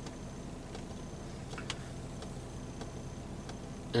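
About half a dozen faint, unevenly spaced clicks, typical of a Mercedes COMAND rotary controller being turned and pressed through menus. The clearest comes a little before the halfway point, and a low steady hum runs underneath.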